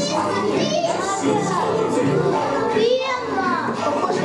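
Many children's voices talking and calling out at once, overlapping and high-pitched, with music playing underneath.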